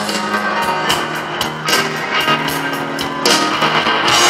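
Live rock band playing the guitar intro of a slow blues, with picked guitar notes ringing over held lower notes.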